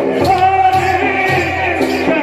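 Rajasthani folk music for a Gindar stick dance: men singing over a steady drum beat, with sharp percussive strikes about twice a second.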